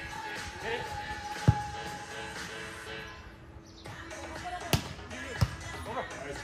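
Volleyball being hit by players' hands and arms during a beach volleyball rally: three sharp smacks, one about a second and a half in and two close together near the end, over background music and voices.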